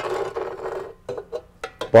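A stainless steel gas plug outlet box being handled and fitted over a gas pipe assembly: about a second of rubbing and scraping, then a few light clicks and taps.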